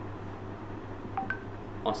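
Two short electronic beeps about a second in, the second higher than the first, over a low steady hum.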